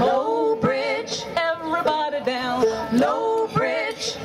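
Women's voices singing an old-time folk song in close harmony, with a strummed banjo accompanying.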